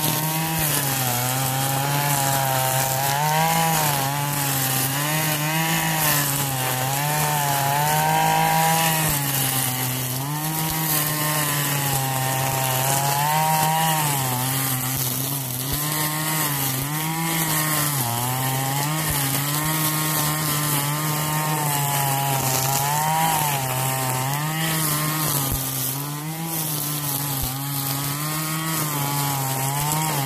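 RedMax 26cc Max Torque two-stroke string trimmer running at high throttle while cutting thick grass and weeds. The engine pitch dips and picks back up every couple of seconds as the line loads in the growth and frees again.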